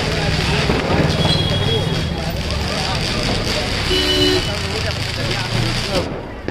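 Busy street sound: overlapping background voices and vehicle noise, with a short car horn toot about four seconds in.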